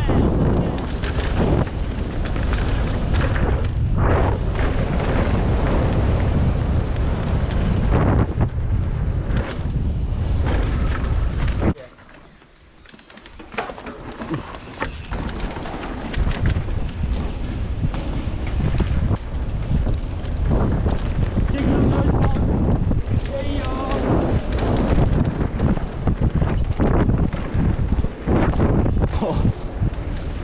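Mountain bike descending a dirt trail at speed: wind buffeting the camera microphone over the rumble and rattle of tyres and suspension on the rough ground. About twelve seconds in, the noise drops away suddenly for a second or two, then builds back up.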